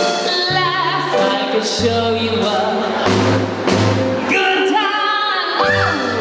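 A woman singing with a live cabaret band: electric keyboard, upright bass and drum kit.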